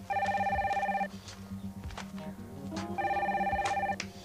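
Desk telephone ringing with an electronic warbling ring: two rings of about a second each, about two seconds apart, over soft background music.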